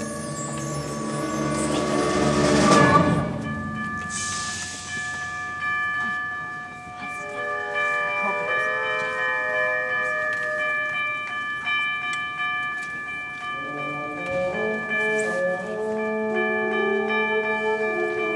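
High school concert band playing: the music swells to a loud climax about three seconds in, with a crash that rings on briefly. Ringing bell-like tones from tubular chimes sound over soft held chords, and the band builds again near the end.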